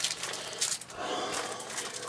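Rustling and crinkling of a large bag and the cutting mat's plastic wrapping as the wrapped mat is pulled out, an uneven stream of small crackles.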